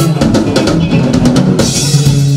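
Live band music with the drum kit to the fore: a run of quick snare and bass drum hits, with a cymbal crash near the end, over the band's bass line.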